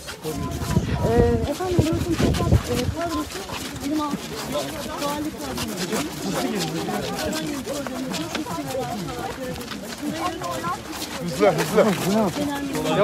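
Several people talking at once in overlapping chatter, with a low rumble on the microphone in the first couple of seconds.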